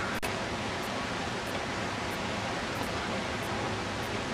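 Steady, even hiss of background noise with no distinct event, and a faint click just after it begins.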